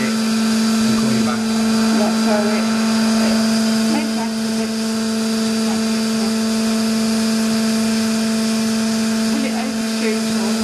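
Electric motor and hydraulic pump of a 1998 Boy 22 D injection moulding machine running steadily, a constant hum with a whine above it.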